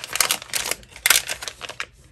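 Plastic zip pouch of wax melts crinkling and rustling as it is handled, in two spells of crackling, quieting near the end.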